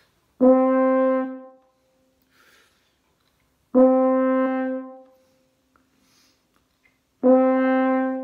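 French horn playing the same note three times, each held about a second with a clean, sudden attack, about three and a half seconds apart. A faint breath is drawn before each note, taken with the mouthpiece off the lips before the horn is set and the note started.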